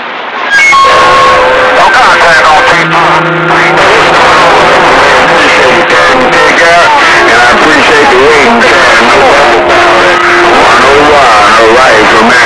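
CB radio receiver on a crowded channel during long-distance skip: several stations talk over one another, garbled and unintelligible, with steady whistle tones and a hiss of static. It comes on abruptly about half a second in and stays loud.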